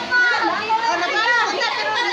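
Children's voices talking and calling out over one another, several at once.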